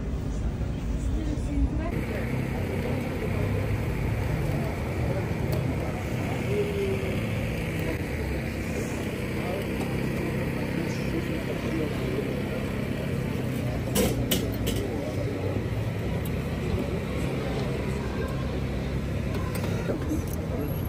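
Outdoor market ambience: indistinct chatter of people around the stalls over a steady traffic rumble, with a couple of sharp clicks about fourteen seconds in.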